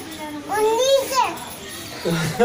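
A young child's voice: one short high call about half a second in, rising and then falling in pitch.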